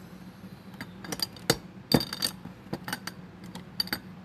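Light clinks and clicks of small hard makeup tools and containers knocking together as they are rummaged through while searching for a brush, in an irregular series with the loudest clink about two seconds in.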